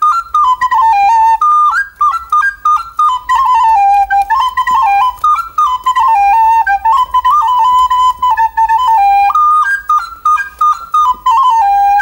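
A recorder playing a lively tune of short, separated notes, ending on a held low note.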